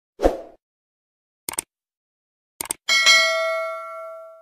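Sound effects for an animated subscribe button: a short thump, then two quick double mouse clicks about a second apart, then a bright notification-bell ding that rings on and fades slowly.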